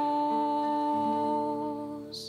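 The held final chord of a hymn to the Virgin, steady and beginning to fade near the end.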